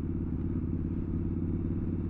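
Triumph Scrambler 1200's parallel-twin engine running at a steady cruise while the bike is ridden, heard from the rider's position as a steady, low engine note.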